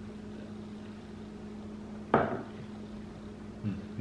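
A drinking glass of eggnog set down on a wooden table: one short clunk about two seconds in, over a steady low room hum.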